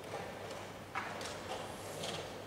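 A few light knocks of chess pieces and clock buttons from nearby boards, about a second in and again near the end, over a steady low hum and the soft background noise of a playing hall.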